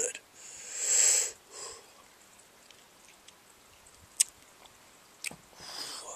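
A man's long, hissing breath lasting about a second, then a short one, and another near the end, as he reacts to the burn of a ghost pepper he has just eaten. Two small clicks fall in between.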